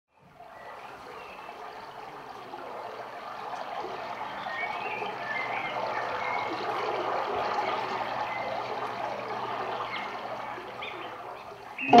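A steady rushing like flowing water, swelling gradually and then easing off, with a few faint short chirps over it.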